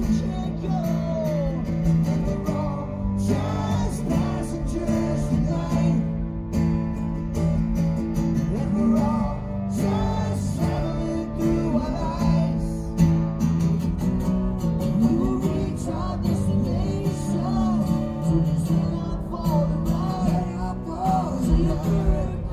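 Live acoustic rock song: acoustic guitars strummed under a male lead vocal, heard through the open-air stage PA from within the audience.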